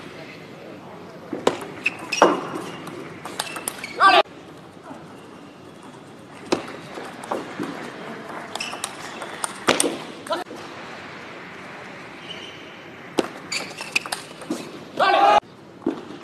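Table tennis rallies: sharp clicks of the celluloid ball off the bats and the table, with short loud shouts, the loudest near the end.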